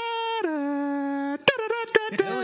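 A mock sci-fi sound effect, a steady humming tone that glides down to a lower note about half a second in, holds, then cuts off, followed by a sharp click.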